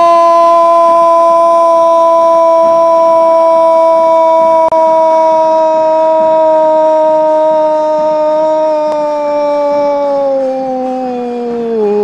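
A TV sports commentator's long drawn-out 'gol' shout calling a goal: one voice held loud on a single steady pitch throughout, sinking a little in pitch near the end.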